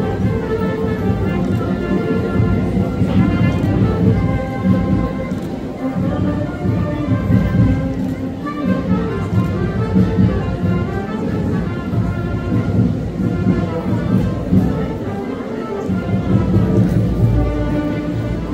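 Music playing steadily, melodic with a strong low end.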